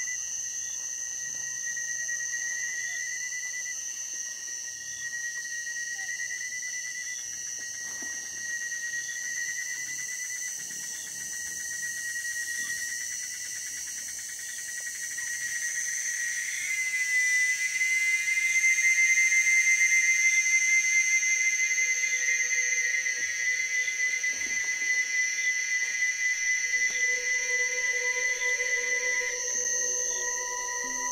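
Beatless ambient electronic music played from a DJ mix: sustained high whistling tones. About sixteen seconds in, a swell brings in a fuller, louder chord of high tones, and lower notes join it later.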